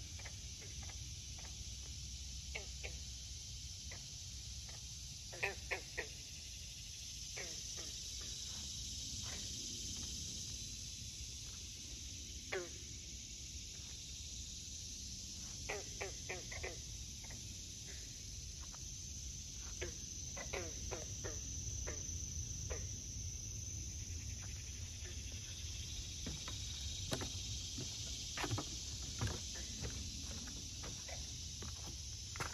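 Frogs calling from a pond in short, downward-sweeping calls, often two to four in quick succession, over a steady high-pitched insect chorus of crickets.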